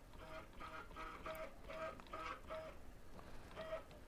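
Stepper motor driving the coil winder's X-axis lead screw, faintly whining in a series of short pitched pulses, about two a second with a pause near the end, as the carriage is jogged in small moves.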